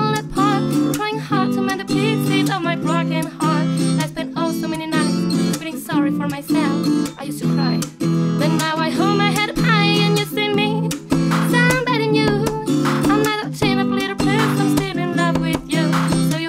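Strummed acoustic guitar chords, with a woman's voice singing a wavering melody over them.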